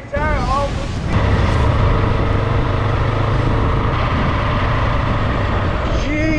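A motorcycle running at a steady cruise, its engine note level, with steady noise over the rider's microphone, starting about a second in after a brief voice.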